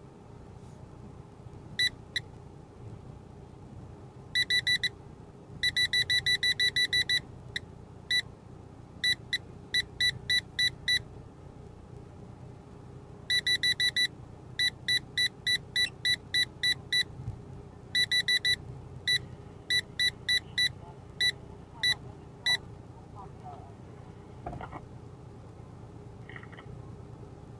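Loud electronic warning beeps inside a vehicle, short high single-pitch beeps coming in irregular runs, sometimes rapid and sometimes spaced about three a second, and stopping about three-quarters of the way through. Under them is the steady low rumble of the vehicle creeping along a dirt track.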